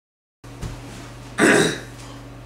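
A person's short, rough vocal noise, like a burp or a cough, about a second and a half in, over a steady low hum.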